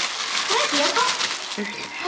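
Crinkly rustling of stiff plastic being handled and pried open, with faint voices underneath.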